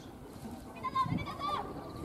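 Distant women's voices shouting short, high-pitched calls across a football pitch. The loudest calls come about a second in, over a low open-air background hum.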